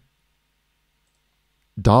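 Near silence, then a man's voice starts speaking near the end.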